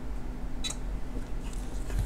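A steady low electrical hum with one short, sharp click about two-thirds of a second in.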